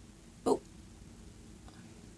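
A single brief vocal sound from a person about half a second in, over quiet room tone.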